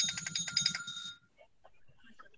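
A high ringing tone, rapidly pulsing, that cuts off a little after a second in, followed by near silence.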